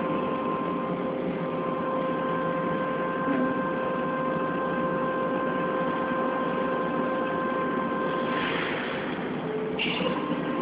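Lisbon Metro ML90 train standing at the platform with its doors open: a steady mid-pitched electrical whine from the train's equipment, which cuts off about eight seconds in, followed by a brief hiss.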